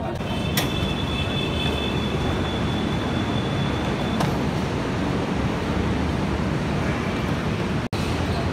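Steady rumble of an Orange Line metro train and station, with a high steady whine held for about three and a half seconds from half a second in, starting and ending with a click. The sound cuts out for an instant just before the end.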